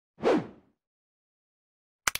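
A single short whoosh sound effect with a falling pitch, about a quarter second in, as an intro graphic comes on.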